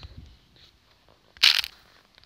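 A brief, loud burst of noise lasting about a third of a second, a second and a half in, with faint low rumbling near the start.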